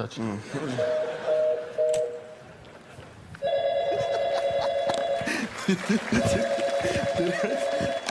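A telephone ringing three times, each ring a warbling two-tone burst of about two seconds, the second and third louder than the first, over audience laughter.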